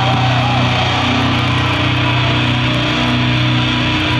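A metalcore band playing live and loud: distorted electric guitars and bass ringing in a dense, unbroken wall over the drums, heard from within the crowd.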